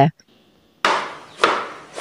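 A wide-bladed kitchen knife chopping through angled luffa (oyong) onto a cutting board: two chops about half a second apart, each dying away gradually.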